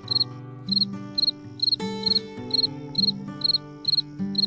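Night-time cricket chirping, short high chirps repeating evenly a little over twice a second, over soft background music with long held notes.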